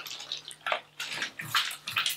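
Bath water sloshing and splashing in a bathtub as a body moves in it, a run of short irregular splashes that grows louder about a second and a half in.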